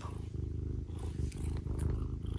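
A tabby cat purring: a steady, low, finely pulsing rumble.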